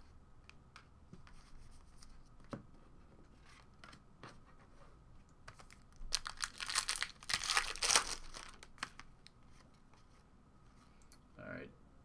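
A foil trading-card pack being torn open: a crinkling rip of the foil wrapper lasting about two seconds, midway through, after light clicks of cards being handled.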